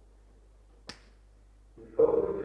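A single sharp click a little under a second in, over a low steady hum; a man's voice starts just before the end.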